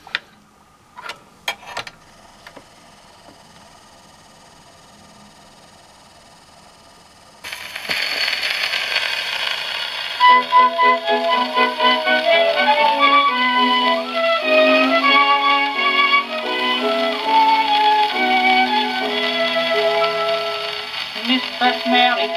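A few clicks, then the needle of an HMV 102 wind-up gramophone meets a 78 rpm shellac record: loud surface hiss starts suddenly about seven seconds in. About three seconds later the orchestral introduction of the record begins, a melody played over the steady hiss of the shellac.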